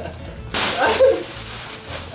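A sudden burst of hissing rustle about half a second in, fading within half a second, from a popped foil Hyper Disc balloon as it is yanked off a man's head. A short vocal sound rides over it.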